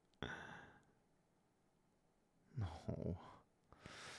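A man's sigh, a breathy exhale that fades out within about half a second, followed by near silence; near the end he says a brief "no, no" and takes a breath.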